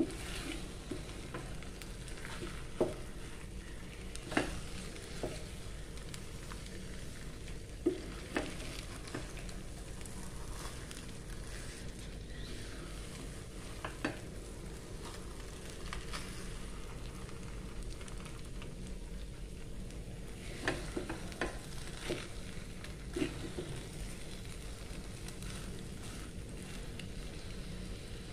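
Wooden spatula stirring and turning thick, sticky ube glutinous rice in a pot on a stove, with a dozen or so short knocks and scrapes of the spatula against the pot over a steady low hum. The rice is being cooked down to thicken it into biko.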